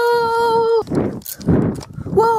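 A child's long yell held on one steady pitch, which cuts off just under a second in. Breathy gasps follow.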